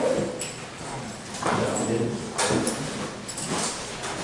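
Indistinct voices with a few short sharp clicks or knocks.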